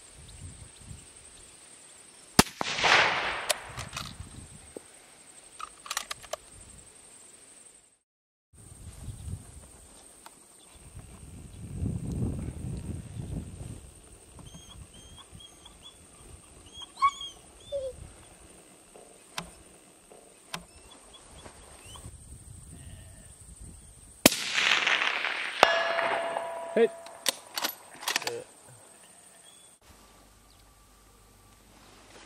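Two rifle shots from a Sako in 6.5x47 Lapua, about 22 seconds apart. Each is a sharp crack followed by a fading rumble; the second has a longer, echoing tail of two to three seconds.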